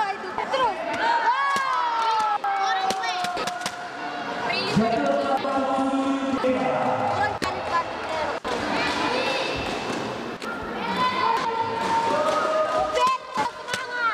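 Raised voices shouting and calling out across the sports hall during sparring, with a few sharp thuds scattered through.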